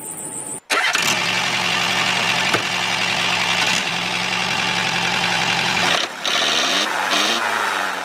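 Small electric motor and gearing of a homemade toy tractor running steadily with a whirring buzz as it drives. About six seconds in the sound briefly drops, then resumes with its pitch gliding.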